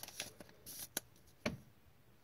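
Faint rustling and crinkling of a thin clear plastic card sleeve as a trading card is slid out of it, with a sharp tick about a second in and a single tap about one and a half seconds in.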